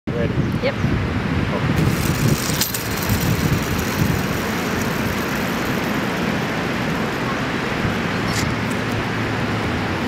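Steady outdoor background noise, a low rumble and hiss that is uneven over the first few seconds and then even, with a few faint clicks. A voice says a single word near the start.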